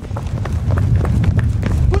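Footsteps of people running hard on pavement in a foot chase, a quick patter of footfalls over a heavy low rumble. A man starts shouting right at the end.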